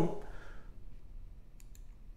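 Two quick computer-mouse clicks about a second and a half in, against faint room tone.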